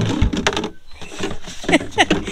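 Plastic gallon jug knocking and scraping against the inside of a plastic bucket as it is pushed in, with a burst of clatter and rustling in the first half second. Then quieter handling, and a short vocal sound near the end.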